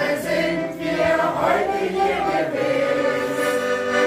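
Amateur choir of older singers, mostly women's voices, singing a German song together to piano accordion accompaniment.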